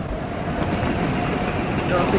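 Steady outdoor background rumble, even and unbroken, with no single sound standing out.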